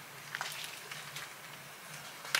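Faint rustling and soft taps of a hardcover picture book being handled and its cover opened, a few short sounds about a third of a second in and again near a second in, over a low steady hum.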